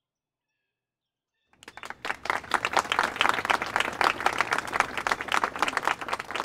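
Silence, then about a second and a half in, many people applauding, building quickly and holding steady.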